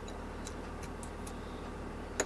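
Light, irregular clicking of small parts of a hydraulic brake caliper press being fitted together by hand, about a dozen faint ticks over a steady low hum.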